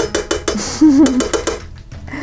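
Metal spoon scraping and knocking tomato paste out of a tin can: a quick run of metallic clicks, about eight a second, that stops about one and a half seconds in.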